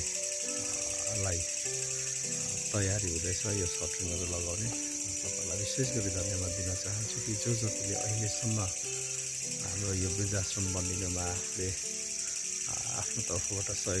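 A man speaking haltingly, with long drawn-out hesitation sounds held between words, over a steady high-pitched hiss.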